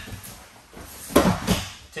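A person thrown with osoto gari lands on a foam grappling mat: two sharp thuds about a third of a second apart as the body hits the mat.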